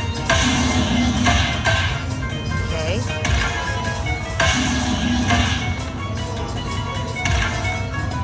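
Dragon Link slot machine in its Hold & Spin fireball bonus: steady electronic bonus music, with a short bright burst of sound several times as new fireballs land on the reels.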